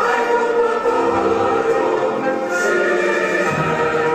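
A group of children singing together in chorus, holding long notes.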